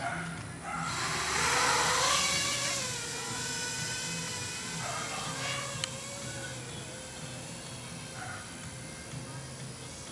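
FPV racing quadcopter's brushless motors and propellers spinning up for takeoff about a second in, then whining as it flies, the pitch rising and falling with the throttle. Loudest just after takeoff.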